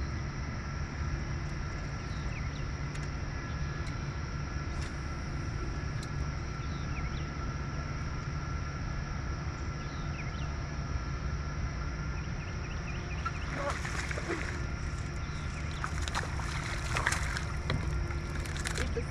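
A steady low hum runs throughout; from about three-quarters of the way in, a hooked bass splashes and thrashes at the water's surface beside the boat, loudest near the end.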